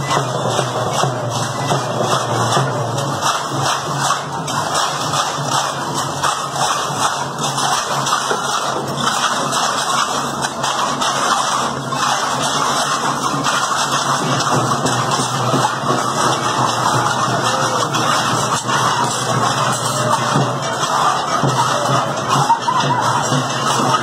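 Music from a street procession of dancers in feathered headdresses, steady and loud throughout, mixed with the noise of the walking crowd.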